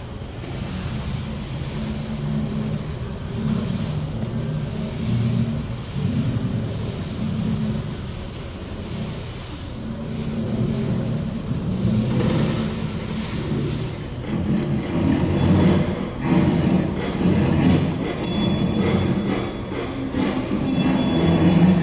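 Experimental improvising ensemble of electric guitars, bass, drums, strings and winds playing a dense, sustained low noise texture of shifting held pitches that slowly grows louder, with short high ringing tones entering about fifteen seconds in.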